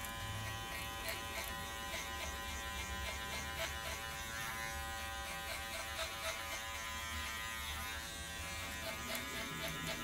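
Wahl Senior electric hair clipper running steadily as it cuts short hair at the sides of the head, with its blade lever opened and the half guard fitted.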